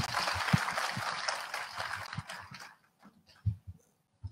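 Audience applause in a hall, fading out over about three seconds, with a few low thumps under it and a louder thump near the end.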